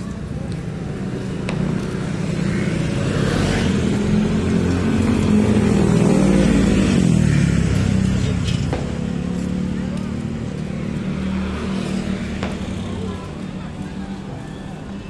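Street traffic passing close by: a motor vehicle's engine grows loud toward the middle and drops in pitch as it goes past, over a steady hum of other engines and people's voices.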